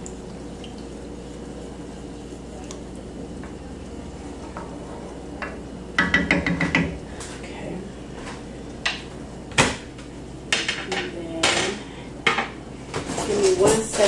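Kitchen clatter of dishes and metal utensils being handled. After about six seconds of low steady hum, a run of sharp clicks, knocks and short clanks, a few of them ringing briefly.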